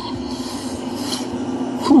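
Close, steady rasping and rubbing as fingers pick apart a piece of milkfish to pull out its fine bones. A short "hmm" comes at the very end.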